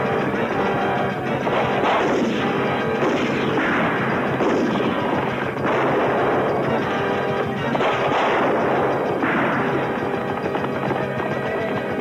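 Film battle soundtrack: gunshots and cannon fire, with a heavier blast every second or two, over a film score.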